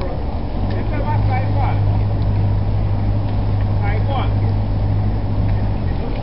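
Engine running with a steady low hum that comes in about half a second in and cuts off suddenly near the end, over a constant rumbling noise; faint voices call out briefly twice.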